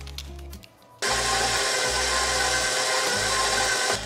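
KitchenAid bowl-lift stand mixer switched on about a second in, its motor running steadily with the paddle beating an egg into a stuffing-mix casserole batter, then switched off just before the end. Low background music plays underneath.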